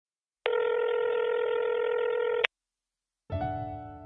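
Telephone ringback tone: a single steady electronic ring tone lasting about two seconds, ending with a click, the sound of a call ringing unanswered at the other end. About a second later a soft piano chord begins and fades.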